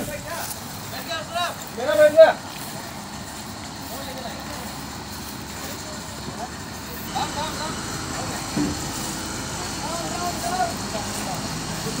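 A railway breakdown crane's diesel engine running steadily, with men's voices calling out over it.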